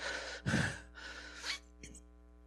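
A man's breathy gasps and exhales of laughter close on a handheld microphone, four short breaths, over a faint steady hum.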